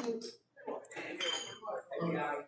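Steel-tip darts being pulled out of a bristle dartboard, their metal barrels clinking together in the hand, with voices alongside.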